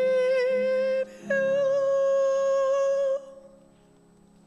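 Church choir singing long held notes with a wavering vibrato, with a short break about a second in, over soft organ accompaniment. The voices stop about three seconds in, leaving a quiet organ chord.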